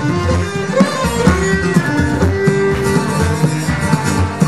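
Acoustic folk band playing an instrumental break between verses: plucked guitar and held melody notes, likely fiddle, over a steady pulsing beat.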